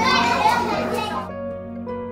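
A group of young children shouting and chattering at once over background music, the voices loudest in the first second or so and then dying away, leaving the music's steady plucked notes.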